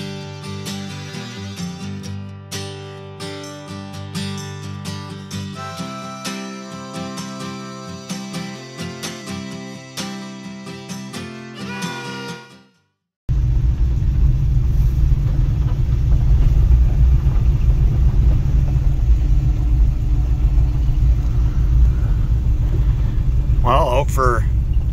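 Guitar music for about the first half, which stops abruptly. After a brief gap comes the loud, steady low rumble of the Camaro's LS3 V8, heard from inside the cabin while the car is under way.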